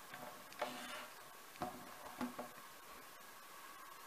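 Faint handling noise from a smartphone and its USB cable being picked up and moved: a few soft taps and clicks over a quiet room background.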